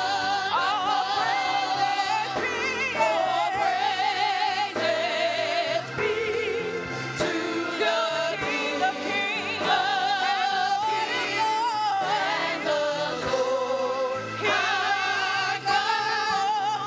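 Gospel praise team of women singing together into microphones, the voices held on long notes with vibrato, over instrumental accompaniment with a moving bass line.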